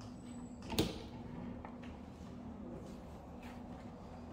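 A door clunking once, sharply, about a second in, followed by a couple of faint clicks, over a steady low hum.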